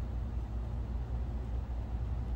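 A steady low machine hum with a soft airy hiss, even throughout with no distinct events.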